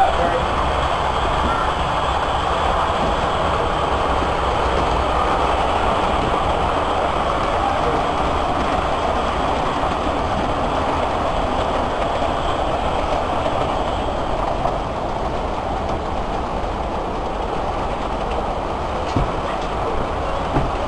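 Model trains running past on the layout's tracks: a steady rolling rumble of wheels on rail and train motors, easing slightly about three-quarters of the way through, with a few clicks near the end.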